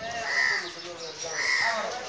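A bird calling twice, about a second apart, each call short and high.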